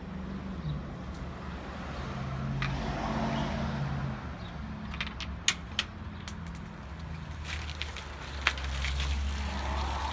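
Mentos dropped into a two-litre bottle of Cherry Coke and the soda foaming up, with a soft fizz early on and a few sharp clicks and taps about halfway through and again near the end, over a steady low hum.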